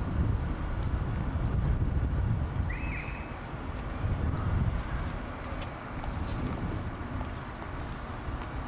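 Wind buffeting an outdoor camera microphone, a steady low rumble with no distinct events.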